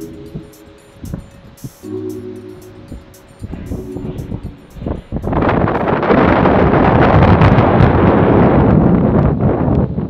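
Background music with short repeated pitched phrases, then about halfway through a loud, even rushing of wind buffeting the microphone takes over and drowns it out. The rushing stops just before the end.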